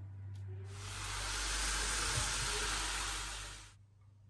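A steady hiss that starts sharply about a second in and cuts off shortly before the end, over a low steady hum.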